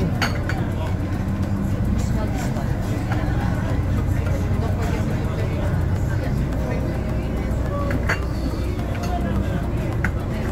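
Cruise boat's engine running steadily, a low drone heard inside the passenger cabin, with passengers' voices in the background.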